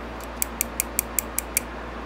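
Loose steel pocket clip of a Benchmade Paratrooper folding knife being lifted and let snap back against the handle: about seven light clicks, evenly spaced about five a second. The clip has very little spring tension.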